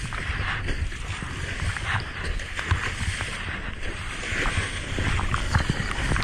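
Ocean surf sloshing and rushing around a GoPro at water level, with a steady low rumble of water and wind on the microphone. A hiss of breaking whitewater swells about four and a half seconds in and again near the end as a wave breaks right beside the camera.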